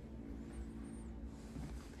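Faint, steady low background hum: room tone with no distinct event.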